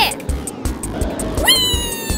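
Upbeat cartoon background music with a quick, steady beat. About one and a half seconds in, a cartoon cat character's voice gives a meow-like cry that jumps up in pitch and then slowly falls.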